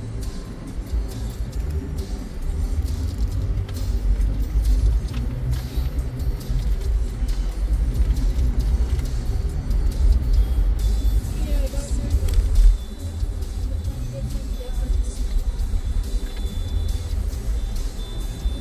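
Low, steady road and engine rumble inside a moving car's cabin, with music playing faintly underneath.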